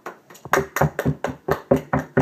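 Hands clapping in a quick run, about six claps a second, starting about half a second in.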